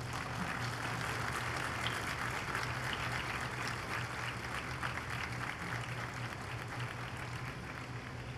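Audience applause: dense clapping from a seated crowd that slowly thins out toward the end, over a steady low hum.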